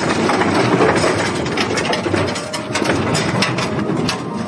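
Heavy steel-mesh cage on casters rolling and rattling as it is pushed over pavement toward a metal loading ramp: a continuous rough rumble with many small clanks.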